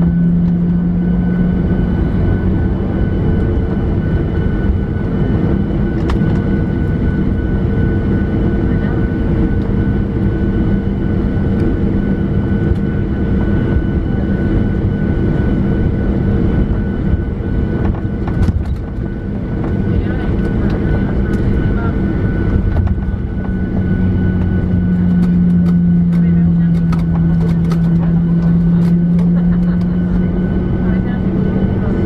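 Airliner jet engines running at low taxi power, heard inside the cabin: a steady rumble with a few held humming tones. The low hum grows louder for the last few seconds.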